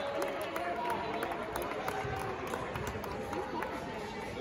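Basketball arena ambience during live play: a steady murmur of crowd voices with scattered shouts and small sounds from the court.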